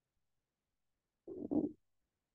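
Silence, broken a little past the middle by one brief, low, rough vocal murmur of about half a second, a hesitation sound between phrases.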